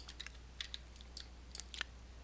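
Faint, scattered small clicks, about ten in two seconds, over a low steady electrical hum.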